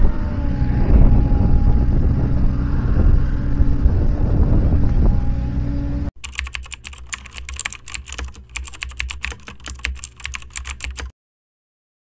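A steady low outdoor rumble, then, about six seconds in, an abrupt switch to a keyboard-typing sound effect: rapid, irregular clicks for about five seconds that cut off suddenly.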